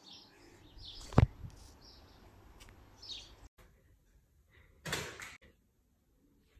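Paper airplanes being thrown: a sharp knock about a second in, then, after an abrupt cut, a brief rustling whoosh just before the five-second mark.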